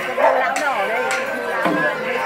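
Percussion in a festival procession struck in a steady beat, a sharp hit about every half second, with voices talking over it.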